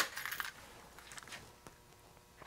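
Small hard parts clinking and rattling as they are rummaged through: a loud clatter at the very start, settling into a few light clicks.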